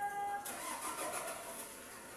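Small car's engine running as it manoeuvres slowly, with a rough, hissy running noise. A steady pitched tone that was sounding cuts off abruptly about half a second in.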